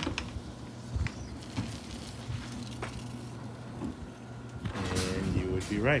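Sectional garage door rising on an electric opener: a steady motor hum with a few sharp clicks and rattles from the moving door. The hum stops about three quarters of the way through, and voices follow.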